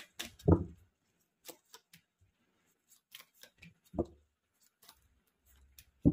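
Tarot cards being drawn from the deck and laid down on a cloth-covered surface: irregular sharp card clicks and snaps, with two brief louder low sounds about half a second and four seconds in.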